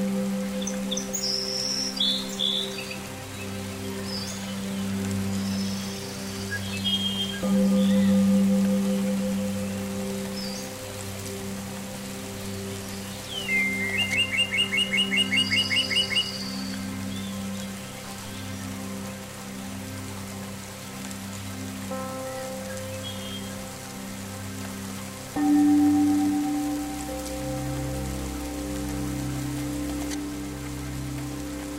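Ambient meditation music of long held low notes, laid over a recording of steady rain with birds chirping. About halfway through a bird gives a fast, evenly repeated trill, and near the end a new, deeper chord comes in.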